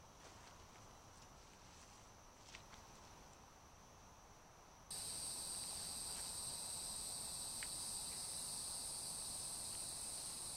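Steady high-pitched chorus of evening insects at a wooded pond. It is faint at first, then about five seconds in it abruptly gets much louder, with a second, higher band joining, and stays steady. A few faint ticks are heard over it.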